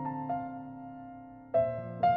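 Soft background piano music: sustained notes ringing and fading, with a new chord struck about one and a half seconds in.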